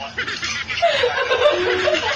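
A man and a woman laughing together in breathy, broken bursts.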